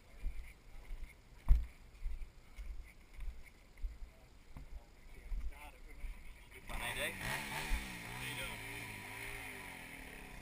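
A dirt bike engine revving up and down under load as it climbs the hill, coming in suddenly about two-thirds of the way through. Before it, soft low thumps of wind buffeting on the microphone.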